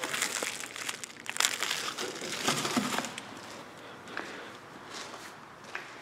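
Plastic packaging and bubble wrap around a power cord crinkling and crackling as it is handled, busiest in the first few seconds and then fading to fainter rustling.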